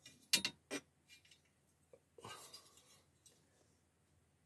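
A sheet of graph paper rustling as it is handled and pressed flat by hand: a few short, crisp rustles in the first second, then a softer rustle a little after two seconds in.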